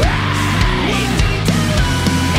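Heavy rock band playing loud, with electric guitar and a full drum kit, and cymbal crashes near the start and about a second and a half in.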